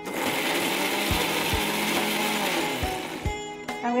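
Electric mixer grinder with a steel jar running, chopping coriander leaves, garlic, ginger, green chillies and onion for a fresh masala paste before any water is added. It switches on at once and stops about three seconds in.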